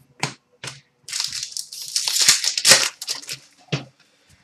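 Trading cards handled by hand: two light taps, then about two seconds of continuous rustling as cards slide against each other, and another tap near the end.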